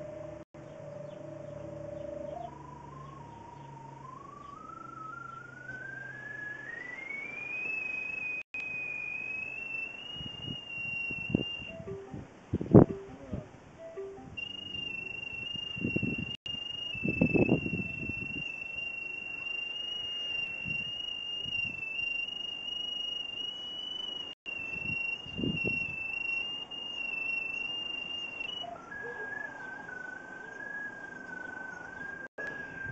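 A thin, high whistling tone climbs in pitch over several seconds, holds steady for most of the time, then drops to a lower pitch near the end. A few short low bumps come in the middle.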